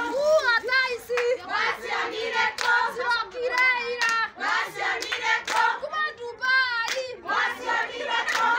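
Women singing and calling out with rhythmic handclaps, about two claps a second. A high, fast-wavering cry stands out about six and a half seconds in.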